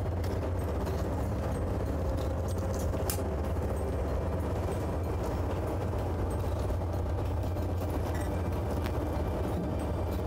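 Steady low drone of a fishing vessel's engine machinery, with a light click about three seconds in.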